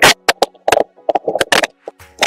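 Start of a recorded electronic song playing back: sharp, irregular clicks or hits a few tenths of a second apart, with a sustained synthesizer chord coming in about half a second in.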